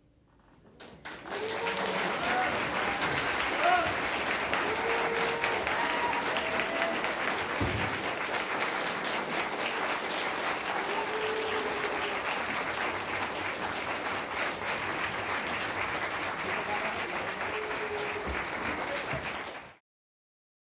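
Audience applauding, with a few voices calling out over the clapping. The applause starts about a second in and cuts off suddenly just before the end.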